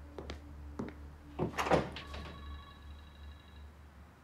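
A door being opened and shut: a few light clicks, then a louder thunk about a second and a half in.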